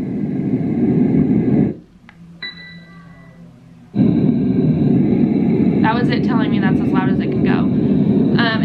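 Dreamegg baby sound machine playing loud, steady white noise. The noise cuts off about two seconds in, the machine gives a short beep as its setting is changed, and about four seconds in a steady fan-noise sound starts up at the same loudness.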